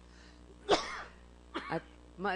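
A single short cough about three-quarters of a second in, picked up by a hearing-room microphone.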